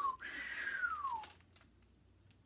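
A whistle sliding down in pitch over about a second, a whooshing wind sound effect for a story.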